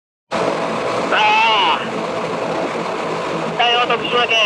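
Silent at first, then motorcycle riding noise cuts in suddenly: steady wind rush on the microphone with the engine underneath at road speed. Two short bursts of voice sound over it, one about a second in and one near the end.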